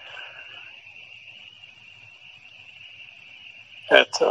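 A steady high-pitched background tone with a faint low hum under it, during a gap in the talk. A sharp click comes near the end, just as speech resumes.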